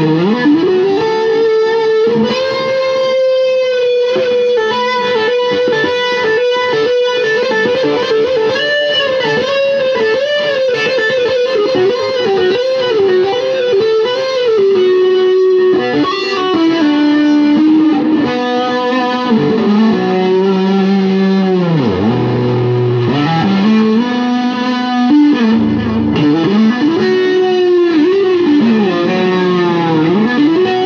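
Jackson Pro Series Soloist SL2Q electric guitar with DiMarzio Evolution humbuckers, played through a Hughes & Kettner GrandMeister amp: a slow, single-line melodic lead of sustained notes with wide vibrato. Twice, around 22 and 26 seconds in, the pitch swoops down and back up.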